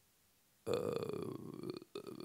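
Near silence, then a man's drawn-out hesitant "uh" into a microphone, held for about a second.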